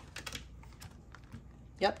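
Tarot cards being shuffled and a card drawn from the deck: a quick run of light clicks and flicks in the first half-second, then a few scattered ones.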